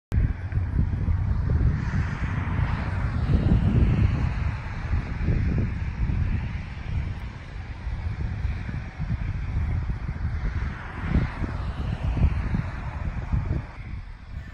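Wind buffeting an outdoor microphone: a loud, uneven, gusting low rumble with a rushing hiss above it that swells a couple of times.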